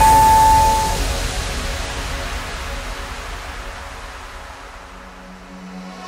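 A single electronic beep lasting about a second, from a workout interval timer marking the end of a work interval, as the electronic dance music breaks off. A low rumble and hiss then fade slowly away.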